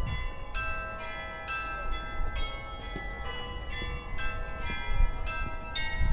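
Church bells chiming a tune, struck notes of different pitches about two a second, each ringing on, over low wind rumble on the microphone.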